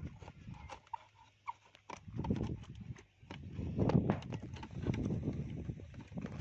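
Scissors cutting into a large plastic bottle: irregular snips, clicks and crackles of the plastic. The sound grows denser and louder in the second half.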